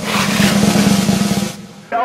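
A snare drum roll played as a short musical sting. It is loud, with very rapid strokes, lasts about a second and a half, and fades out.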